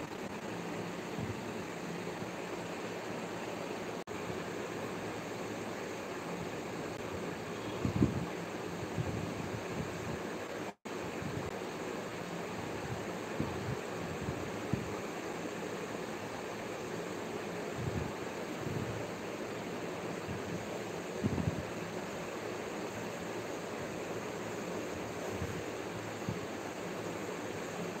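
Steady, even background noise, with a few soft low thumps, the loudest about eight seconds in, and a brief cut-out of the sound near eleven seconds.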